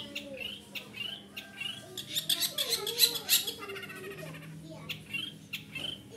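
Caged long-tailed shrike calling: rapid runs of high, scratchy chattering notes, loudest in a burst about two to three and a half seconds in, with short chirps between.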